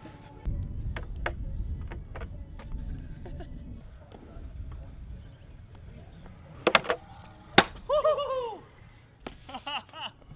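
Stunt scooter on 120 mm hollowcore wheels rolling over concrete with a low rumble, then two sharp clacks about a second apart as it takes off from the jump ramp and lands, followed by a short shout.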